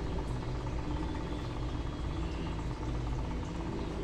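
A steady low mechanical hum, even throughout.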